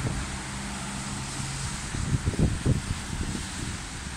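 Street traffic: cars driving past with a steady hiss and a low engine hum in the first second or so. Wind buffets the microphone in gusts about two seconds in.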